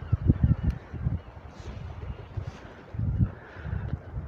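Wind buffeting a phone's microphone as it is moved in the hand, giving an uneven low rumble with scattered thumps over a faint hiss.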